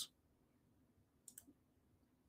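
Near silence, broken by a quick pair of faint clicks about one and a half seconds in.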